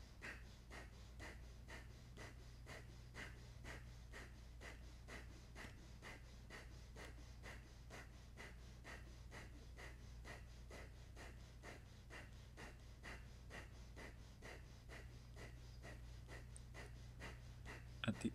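Kapalabhati breathing: rapid, forceful exhalations puffed out through the nose by pumping the lower belly, each inhale passive. The puffs are faint and evenly paced, about three a second.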